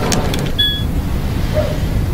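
A few quick taps on a mobile phone's keys, then a short electronic beep about half a second in as a text message goes through, over a steady low rumble.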